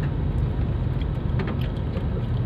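Steady low rumble of a car's engine and tyres heard from inside the cabin as the car rolls slowly along a road.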